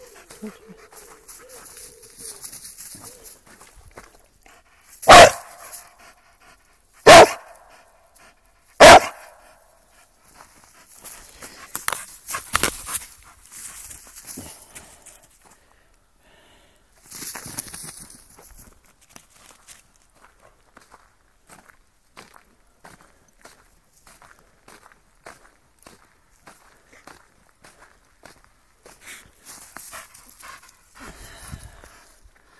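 Dog barking three loud times, each about two seconds apart.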